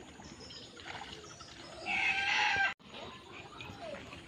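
A chicken calling loudly once, a pitched call just under a second long about two seconds in, which cuts off suddenly.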